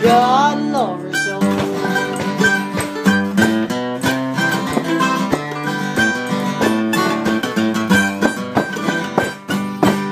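Instrumental ending of a country song: acoustic guitar and other plucked strings pick a steady tune, with a sliding note in the first second. A final strum comes near the end and rings on.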